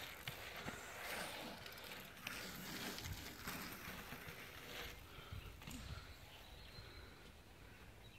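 Faint sound of a bike rolling over a tarmac pump track at a distance: a low, even rolling hiss with a few soft knocks, fading towards the end.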